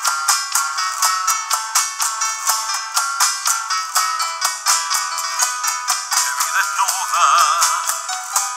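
Live folk music led by a nylon-string classical guitar, played in quick, regular strokes under an instrumental break. The sound is thin, with no low end. In the last second or two a wavering sustained melody line comes in over the guitar.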